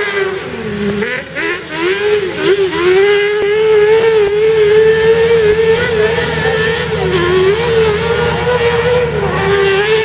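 Off-road racing buggy engines revving hard at high revs on a dirt track, the pitch wavering and dipping briefly a few times as the throttle is lifted and reapplied.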